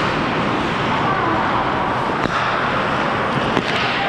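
Ice hockey play around the net: a steady wash of rink noise from skates on the ice, with a couple of sharp clacks about two seconds in and near the end.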